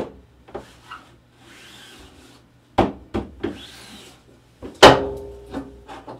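Rubber squeegee dragged twice across a screen-printing screen, a soft rasping rub of blade over mesh, with several knocks of the wooden screen frame against the print table. The loudest is a sharp knock with a brief ring about five seconds in, as the hinged screen is lifted.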